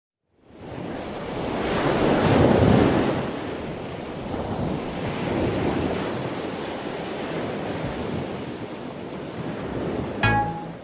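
Steady rushing noise of wind and waves, fading up from silence, swelling around two to three seconds in, then settling.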